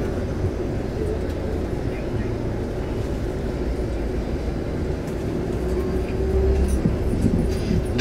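Engine and road noise inside a moving vehicle: a steady low rumble with a constant hum, growing a little louder about six seconds in.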